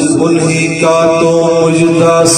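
A man singing a naat, an Urdu devotional poem, unaccompanied into a microphone, holding long steady notes with a step up in pitch about a second in.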